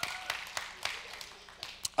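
A few scattered, irregular claps and faint voices from a seated audience in a large room.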